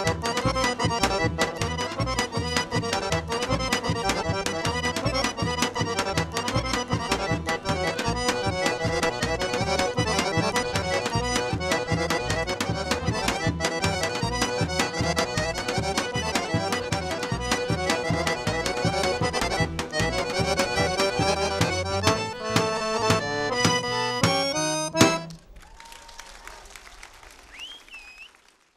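Bulgarian folk horo dance tune led by accordion over a steady driving beat. It ends with a quick closing run about 25 seconds in, followed by a few seconds of faint noise as the sound fades out.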